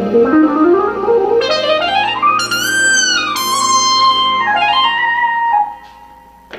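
Jazz group of keyboard, bass, drums, guitar and saxophone playing; a lead line slides steadily upward in pitch for about three seconds, arches over and settles on a held note, then the band cuts out suddenly near the end.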